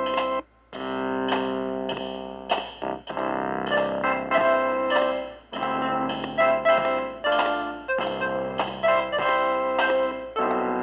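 Artiphon Orba synthesizer playing its looped three-part pattern of drums, bass and chords, with a lead melody tapped in on its pads over the top. The sound cuts out briefly about half a second in, then the loop carries on.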